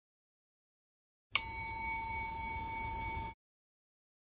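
A single bright ding, a struck chime sound effect on the intro title card, ringing with a clear tone and fading slowly before it is cut off abruptly about two seconds later.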